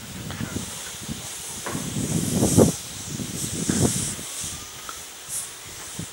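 Narrow-gauge steam locomotive moving slowly, giving off irregular bursts of hissing steam over a low rumble, the loudest about halfway through.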